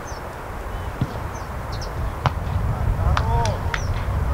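Open-air football pitch sound: a steady low rumble of wind on the microphone, with a couple of sharp knocks of a football being kicked and distant shouts of players near the end.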